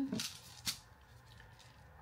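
A plastic jar of hard wax beads being handled: the beads shift briefly and the jar gives one sharp click under a second in.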